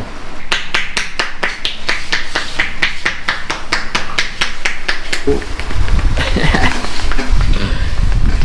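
Barber's hands rapidly tapping the customer's head in a head massage, an even run of sharp claps at about five or six a second, stopping about five seconds in. A low rumble and some faint voice sounds follow.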